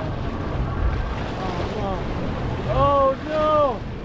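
Wind buffeting the microphone over the low, steady running of a boat's outboard motor, with water splashing at the stern as a hooked fish is brought alongside. About three seconds in, a man's voice gives two long, drawn-out calls.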